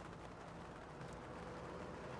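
Quiet, faint rubbing of a cotton cloth wiped with light, flat-hand pressure over a painted panel, lifting excess touch-up paint with blending solution.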